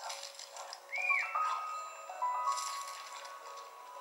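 Animated-film soundtrack music played through the laptop's small speakers and picked up in the room, thin with no bass: held notes stepping up and down in pitch. About a second in there is a short high sound that rises and falls in pitch.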